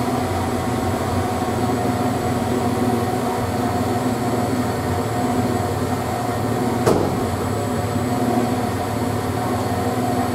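Holden VN Commodore with a 2.5-inch Redback sports exhaust idling steadily at a constant low pitch. A single sharp click about seven seconds in.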